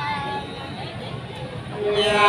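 Unaccompanied sli folk singing: a voice slides up into a long held note at the start that fades within the first second, and another voice begins a long steady held note just before the end, over a murmur of voices.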